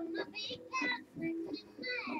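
High-pitched singing, in a child-like voice, over music with steady held notes underneath, in short phrases with a falling slide at the end.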